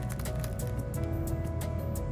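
Background music: sustained notes over a light, steady percussive beat.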